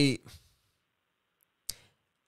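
A man's word trails off, then a pause with a single short, sharp click near the end.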